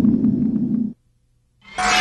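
Produced sound effects for animated title text: a low rumbling noise that cuts off about a second in, then, after a brief gap, a whoosh that swells in near the end.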